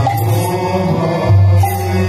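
Devotional Odia naam sankirtan: a group of men chanting the holy names to harmonium, with mridanga drum and small brass hand cymbals (kartal) keeping time.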